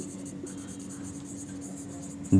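Marker pen writing on a whiteboard: a run of short, high-pitched scratching strokes as letters are written, over a faint steady hum.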